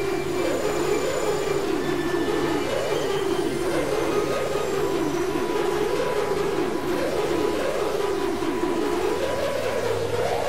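Experimental electronic synthesizer drone: a dense, steady midrange cluster of many quick, overlapping pitch glides over a steady low hum, with faint sustained high tones above.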